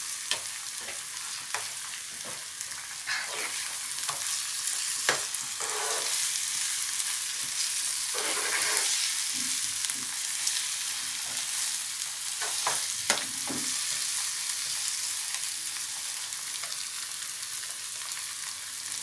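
Eggs and cluster beans sizzling in a nonstick frying pan, a steady hiss, while a steel spoon stirs and scrambles them. Irregular scrapes and taps of the spoon against the pan come through the sizzle.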